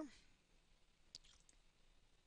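Two faint computer mouse clicks, about a second in and half a second apart, choosing items from a software menu, over near silence.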